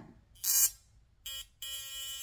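ProFacialWand high-frequency skin wand buzzing as its glowing glass mushroom electrode is held on the cheek: a brief blip a little past a second in, then a steady electric buzz from about a second and a half. A short hiss comes about half a second in.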